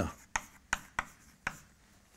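Chalk striking a blackboard while writing: four sharp clicks within about a second and a half.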